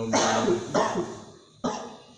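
A man coughing and clearing his throat: a rough cough lasting about a second, then one short sharp cough about one and a half seconds in.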